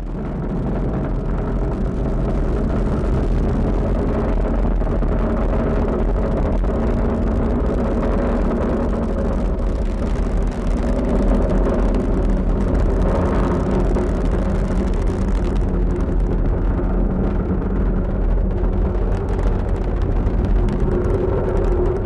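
Falcon 9 rocket's first-stage engines firing during ascent: a loud, steady rumble with a deep low end.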